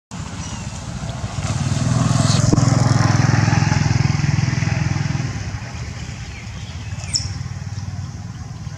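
Engine of a passing motor vehicle: a low, pulsing hum grows louder over a couple of seconds, holds, then fades away. A brief sharp high sound comes near the end.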